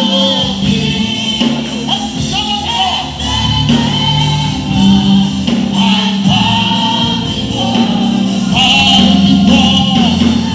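Live gospel praise music: a male lead singer and a choir singing together over instrumental accompaniment.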